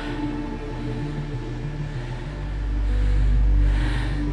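Droning film score with sustained tones and a repeating low bass pattern; a deep rumbling swell builds from about halfway through and peaks near the end.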